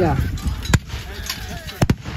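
Black-powder medieval handguns firing: a sharp crack about a second in, then two more in quick succession near the end.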